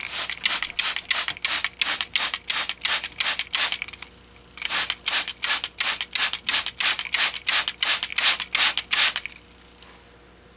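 Hand trigger spray bottle squirted rapidly, about four sprays a second, in two runs of roughly four seconds with a short break between. The water goes into the cooling unit to test its new condensate drain.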